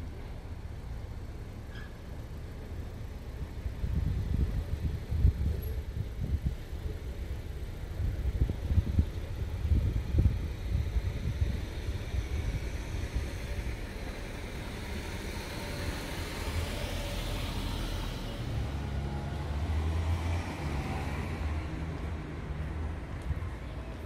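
Street traffic: a low vehicle rumble throughout, with a car passing about three-quarters of the way in and a steady engine hum after it.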